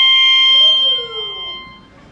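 Melodica holding one high, piercing note with bright overtones, which fades out near the end. A quieter, lower tone slides downward beneath it.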